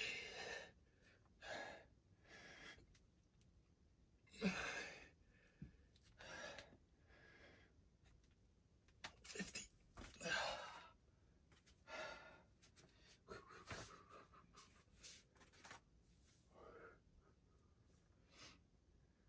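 A man breathing hard and faintly, a forceful breath every second or two, winded from doing push-ups.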